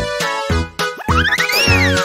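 Bouncy children's background music with a steady beat. About a second in, a cartoon whistle-like sound effect climbs in little steps, then swoops up and back down.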